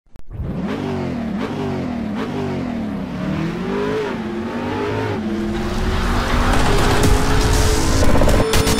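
Car engine revving: the pitch climbs and drops about six times in quick succession, then holds and rises slowly as it accelerates, with a rushing noise growing louder toward the end.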